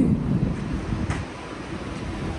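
Wind buffeting the microphone over the low rumble of city street traffic, easing off a little past a second in.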